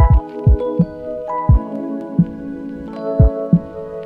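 Background music: a melody of held notes over a low, thudding beat.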